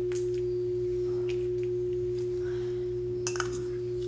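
A steady, single-pitched hum holding one tone without change, with a few faint clicks about three seconds in.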